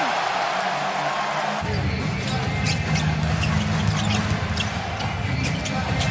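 Arena game sound from a basketball court: crowd noise with a basketball bouncing on the hardwood floor in several sharp strikes. Low arena music comes in about a second and a half in.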